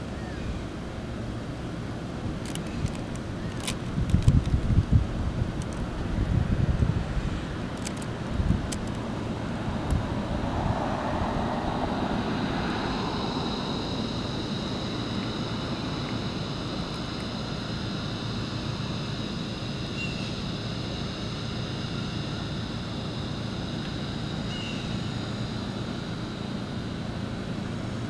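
Outdoor background noise: wind buffeting the microphone in gusts during the first several seconds over a steady hum like distant road traffic, with a few faint clicks. A steady high whine sets in about twelve seconds in and holds.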